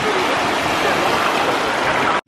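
Small waves of shallow sea surf washing in and splashing around a child playing at the water's edge, a steady rushing water noise.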